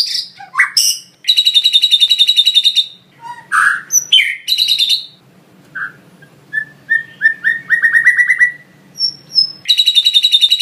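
White-rumped shama (murai batu) singing a varied song of whistles and chirps filled with lovebird-style calls. There is a fast rattling trill about a second in and again near the end, and a run of short notes that speeds up in the middle.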